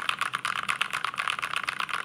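Drop CTRL High-Profile mechanical keyboard with lubed Momoka Frog switches and Artifact Bloom keycaps being typed on: a fast, even run of keystrokes.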